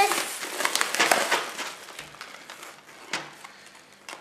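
Plastic bubble wrap crinkling and crackling as it is handled, loudest in the first two seconds and then fading, with a single sharp click about three seconds in.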